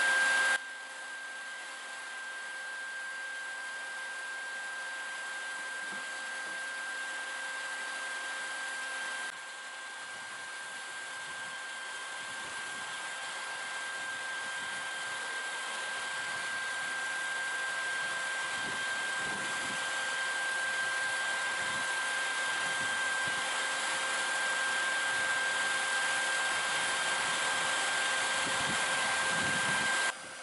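Bee vacuum's motor running steadily with a high, constant whine. It drops suddenly in loudness just after the start and again about nine seconds in, then slowly grows louder.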